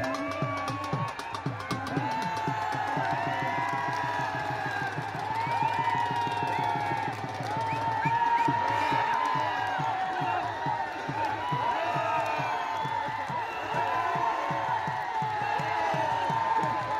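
Drum beaten in a fast, steady rhythm under a crowd shouting and whooping, typical of the drumming at a kushti dangal. The shouting swells about halfway through as one wrestler lifts and throws the other.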